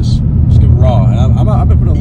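Steady low rumble of a car driving, heard from inside the cabin, with conversation over it.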